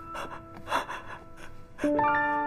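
A man's sharp, breathy gasps, several in a row, as he breaks down in distress, over background music with long held notes.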